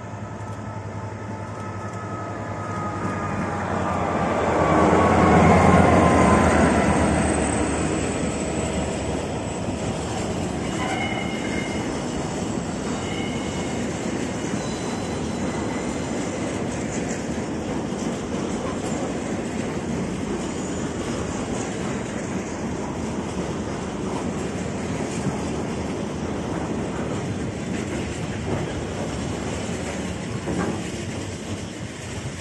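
A Class 66 diesel locomotive heading a container freight train passes close by. Its engine note is loudest about five seconds in and drops in pitch as it goes by. The container wagons then roll past with a steady rumble of wheels on the rails, broken by a few brief high squeals.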